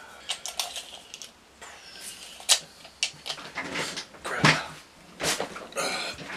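Small parts and wrapping being handled on a workbench: rustling with a series of sharp clicks, the loudest about two and a half seconds in and twice more near the end.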